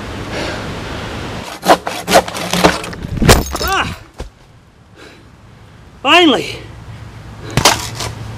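Several sharp wooden knocks and cracks, with two short rising-and-falling groans from a worn-out man, the second louder, after a quiet stretch.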